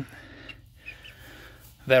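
A quiet pause between a man's words, with faint soft sounds from young chicks on straw, including a brief faint chirp about a second in.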